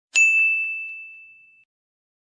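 A single bright bell-like ding, struck once, that rings out and fades away within about a second and a half.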